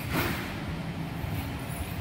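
Steady low background rumble of a car workshop, with a brief rustling burst just after the start.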